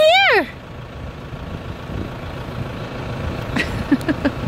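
Steady low engine hum running in the background, with a few faint clicks near the end.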